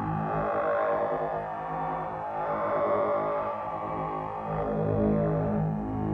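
A Keen Association 268e graphic waveform generator oscillator in a Buchla modular synthesizer sounding a steady pitched tone. Its timbre keeps shifting in short repeating segments as envelope control voltages reshape the drawn waveform and change its tape speed.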